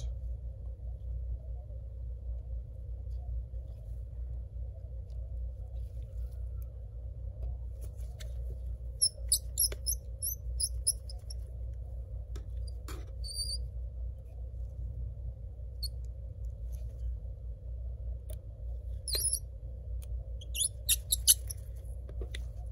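Small screwdriver and gloved hands working screws and parts inside an open laptop: scattered faint clicks and a few short high squeaks, over a steady low hum.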